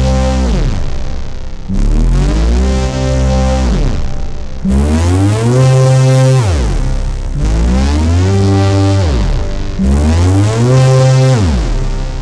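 SkyDust 3D software synth playing a run of held notes, about four in all. Each note holds a steady pitch and then slides steeply down as the key is let go: the pitch envelope's release is set to drop the pitch by 24 semitones, giving a sound like a machine winding down.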